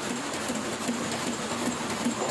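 Heidelberg offset printing press running, its sheet feeder lifting sheets off the paper pile with a steady mechanical clatter.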